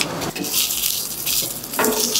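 Smashed baby potatoes sizzling in oil in a pan as fresh Sichuan leaves are dropped in and a wooden spatula stirs them, a steady hiss with soft stirring scrapes.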